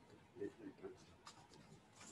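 Near silence with faint, indistinct voices in the first second and a few light clicks and rustles, like handling near a microphone.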